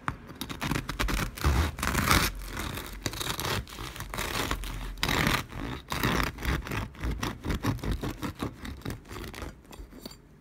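Serrated bread knife sawing back and forth through a crisp-crusted homemade loaf, a crackling scrape with each stroke. The loudest strokes come about two and five seconds in, and the cutting stops just before the end.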